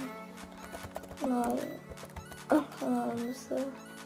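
A voice saying a few short, quiet phrases in three bursts, over a steady background music bed.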